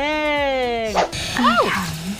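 A woman's voice drawing out the last word of a sentence as one long, slowly falling note, then, about a second and a half in, a short high squeal that rises and falls.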